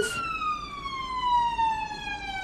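Ambulance siren wailing, its pitch falling in one slow, steady sweep.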